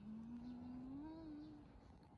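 A woman humming one long low closed-mouth "mmm" while cuddling a baby monkey; the note rises slightly in pitch before it fades out near the end.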